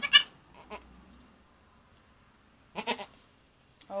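A goat bleats once, briefly, about three seconds in.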